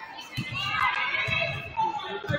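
Basketball dribbled on a hardwood gym floor, low thuds about once a second, under high-pitched shouting voices of spectators and players echoing in the gym.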